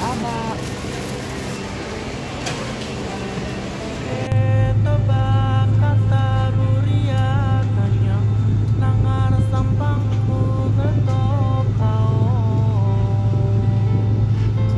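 For about four seconds, a plastic bag crinkles and biscuits rattle as it is filled by hand. Then a loud, steady low hum, the drone of an airliner cabin, takes over, with voices and music over it.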